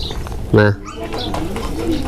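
A bird cooing in low, wavering calls through the second half.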